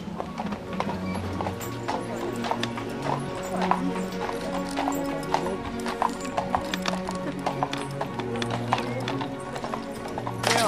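Horse hooves clip-clopping on hard ground, an uneven few strikes a second, under music with steady held notes.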